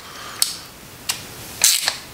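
A ratchet wrench clicks in short bursts as the Allen bolts securing a motorcycle engine's cam plate are loosened, with a louder run of clicks near the end.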